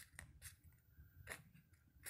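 Faint, short scratches of a pen drawing tally marks on notebook paper, a few separate strokes against near silence.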